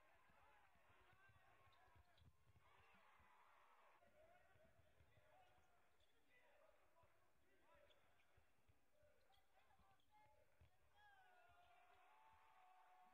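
Very faint live court sound from a basketball game: a ball bouncing on the hardwood floor, short squeaks and distant voices in the arena.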